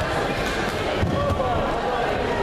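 A judoka is thrown onto the tatami and lands with a single thud about a second in. Voices from the hall murmur behind it.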